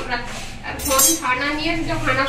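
Kitchen utensils and dishes clinking, with one sharp clink a little under a second in, under people's voices.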